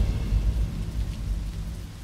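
A low rumbling sound effect fading steadily away, with a faint hiss above it: the dying tail of a dramatic hit in the soundtrack.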